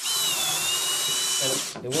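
Cordless drill running at speed with a steady whine, driving a long, mostly unthreaded screw down through carpet to probe for a floor joist; the screw slides in without grabbing, so no joist is under it. The drill stops briefly near the end and starts again.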